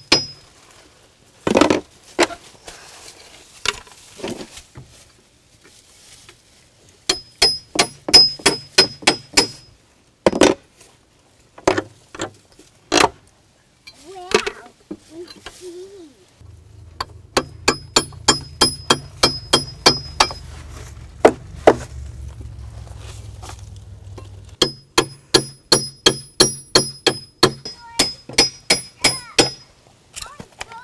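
Runs of rapid hammer blows on metal, about four a second, each with a bright metallic ring, with pauses between the runs. The strikes come from knocking deck joists loose from the house during demolition.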